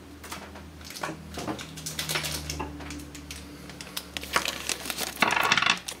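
Steel pieces of a True Radius sear stoning jig handled and set down on a wooden bench: scattered small metallic clicks and taps, most of them bunched near the end, over a low steady hum.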